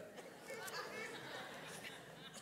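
Faint chatter of several voices in the room.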